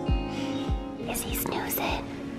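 Background music with a steady beat. About halfway through, a short whisper sounds over it.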